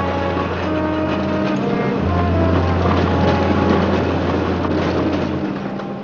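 Cable car running along its track with a steady clatter and rattle, under orchestral background music with long held notes.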